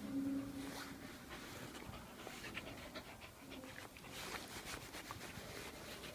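Pembroke Welsh Corgi panting faintly while a hand rubs its head, with the soft rustle of the hand on its fur.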